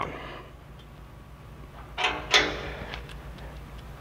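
Torque wrench tightening a stainless steel bull-bar fastener: one sharp metallic click about halfway through, with a short ring after it, over a low steady shop hum.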